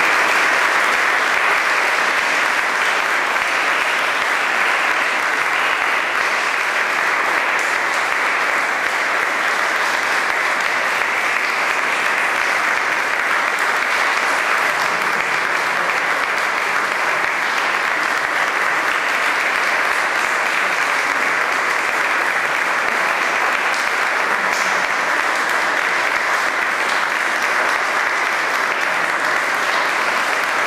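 Audience applauding: dense, even clapping that holds at a steady level.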